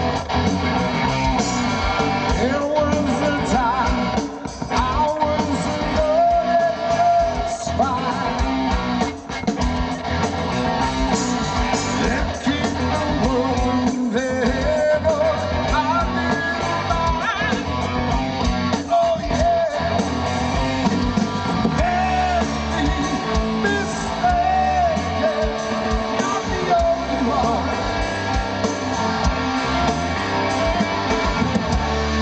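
Live rock band playing through a PA: electric guitars, bass and drums, with a male lead singer.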